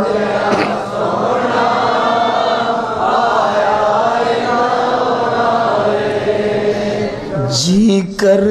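A crowd of men chanting together in a devotional naat, many voices blending into one wavering mass of sound. Near the end a single amplified male voice slides up and takes over again.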